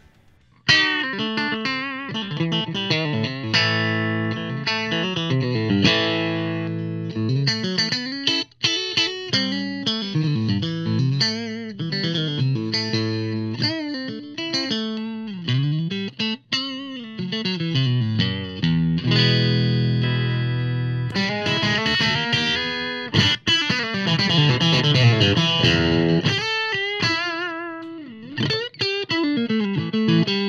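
Fender Telecaster Thinline electric guitar strung with Elixir OptiWeb coated strings, played through an amp: picked single-note lines and chords with string bends. A chord is held and left ringing about two-thirds of the way through. The player credits the coating with a crisp, balanced tone.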